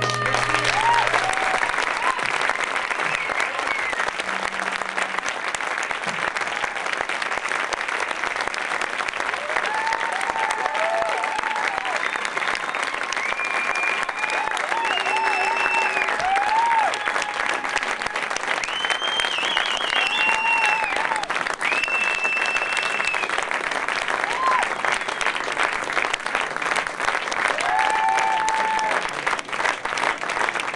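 Audience applauding at the end of a solo acoustic guitar song, with scattered shouts and whistles over the clapping. The song's last strummed guitar chord rings out in the first second.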